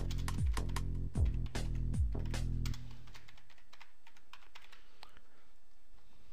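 Computer keyboard typing, a run of quick irregular key clicks, over background electronic music with a steady kick-drum beat. The beat drops out a little under halfway through, leaving the typing.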